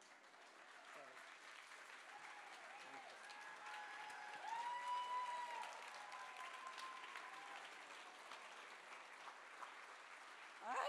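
Audience applauding, building up and loudest about halfway through, with a voice calling out over the clapping in the middle.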